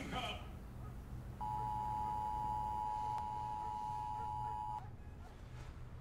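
Emergency Alert System attention signal from a television: a steady two-tone beep just under 1 kHz, starting about a second and a half in and cutting off sharply after about three and a half seconds. It announces an emergency broadcast.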